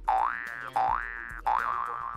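Cartoon-style boing sound effect: three quick rising pitch glides, the third wobbling and drawn out for about a second and a half, over quiet background music.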